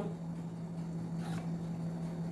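A steady low hum under faint room noise, with a soft brief sound a little past the middle as a metal spoon lifts thick sauce in a pan.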